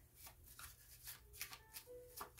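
A tarot deck being shuffled by hand, faint, with many soft, irregular card clicks.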